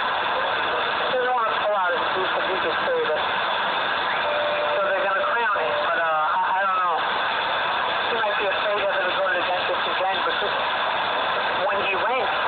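A Midland CB radio receiving, its speaker full of steady static with garbled voices of distant skip stations fading in and out. About four seconds in, a steady whistle sounds for a second and a half.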